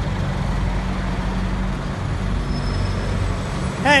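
Street traffic dominated by a double-decker bus's diesel engine running close by: a steady low drone.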